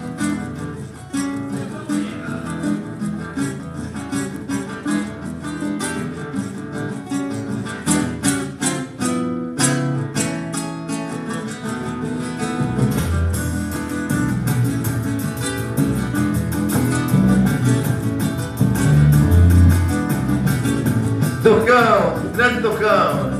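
Acoustic guitar and drum kit playing live together, the guitar strummed and plucked over sharp drum and cymbal hits. Deeper low notes join a little past the middle, and a voice comes in right at the end.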